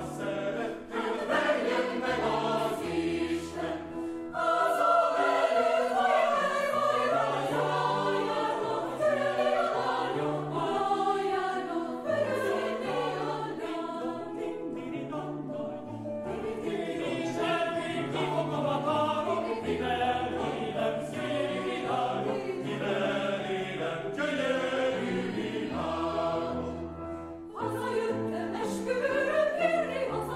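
Mixed choir singing a Hungarian folk-song arrangement in several parts, with piano accompaniment, the phrases ending together near the end.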